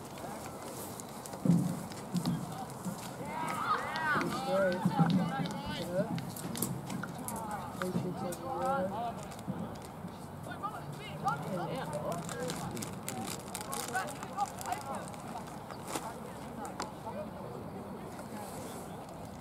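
Scattered shouts and calls from players and sideline spectators at an outdoor junior rugby league game, coming in short bursts rather than steady talk.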